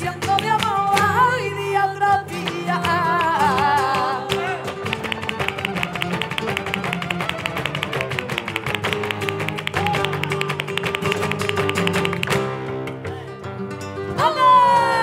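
Flamenco music: a singer's wavering vocal line over guitar for the first few seconds, then a fast, even run of sharp percussive strokes through most of the rest, dropping away near the end.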